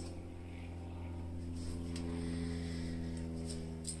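A steady electrical hum made of a stack of even low tones, with a few faint handling noises over it.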